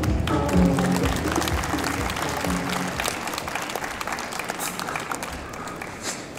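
Audience applauding while the runway's beat-driven music plays and then fades out about halfway through, the clapping slowly dying away.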